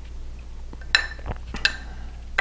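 Metal teaspoon clinking twice against a ceramic mug as it works cinnamon sugar over the cake.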